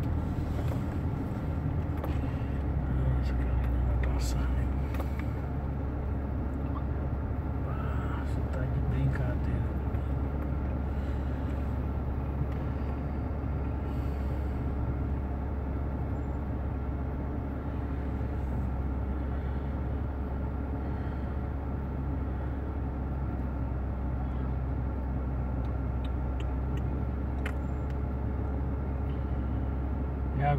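Car engine running at low speed, heard from inside the cabin as a steady low hum.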